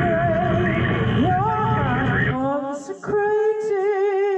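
Live experimental noise music: a dense wall of electronic noise with wavering pitched tones over it, which cuts off about two and a half seconds in, leaving a single wavering sung-like tone with vibrato.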